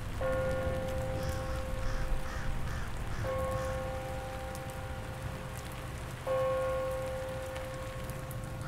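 Background music: three held notes at the same pitch, each sounding for about three seconds, a new one entering about three and six seconds in, the last the loudest. A steady rain ambience runs underneath.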